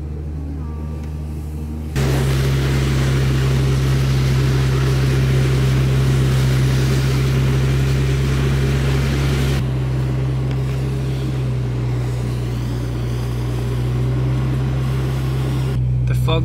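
Super jeep driving over snow: a steady low engine drone at first. About two seconds in, a sudden louder rush of tyre and wind noise joins it, with the engine still droning underneath. The rush eases somewhat about ten seconds in.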